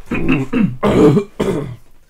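A man coughing and clearing his throat, three times in quick succession.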